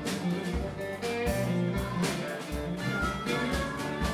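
A small live blues band playing an instrumental stretch: electric guitar over a drum kit keeping a steady beat.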